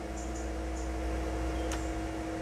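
Steady background hum in a pause between speech: a low rumble with a faint steady tone, and one faint click near the end.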